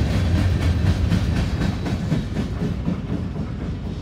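Freight train cars rolling past close by: a steady low rumble of wheels on rail, with repeated clacks from the wheels going over rail joints.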